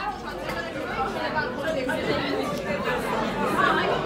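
Background chatter of many people talking at once in a busy pub dining room.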